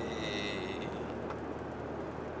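Steady low rumble of a minivan's engine and road noise heard inside the cabin while driving. The drawn-out end of a man's voice fades out in the first moment.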